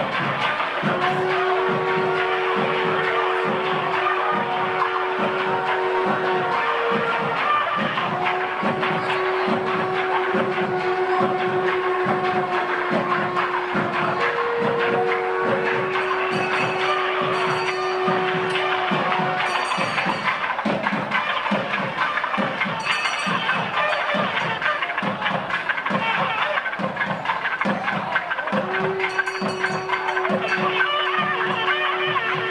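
Nadaswaram and thavil temple music: the reed pipe holds long sustained notes over a steady beat of drum strokes, about two or three a second. Bursts of high, bright ringing come in during the second half.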